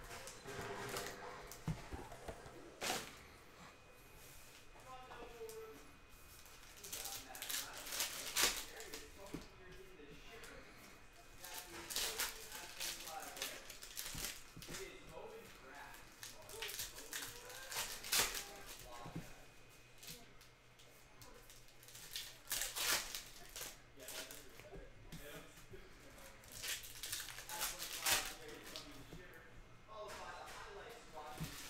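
Foil trading-card pack wrappers crinkling and tearing open, with cards being handled, in a string of sharp rustles and rips.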